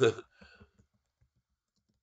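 A man's voice trails off at the start, then a few faint, scattered keystrokes on a computer keyboard with quiet gaps between them.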